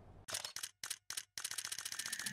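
Camera shutter clicks: about five separate shots, then a fast burst of rapid clicks through the second half, like a camera firing in continuous mode.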